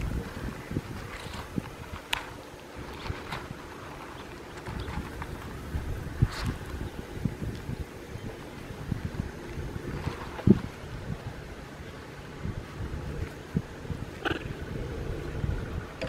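Wind rumbling on the microphone, with scattered rustles and crinkles as a baby macaque handles a large lotus leaf, and a few brief sharp sounds spread through.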